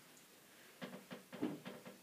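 Soft rustling of a cloth head scarf being unwound and lifted off a head. The first second is almost quiet, and a few faint brushes and rustles come in the second half.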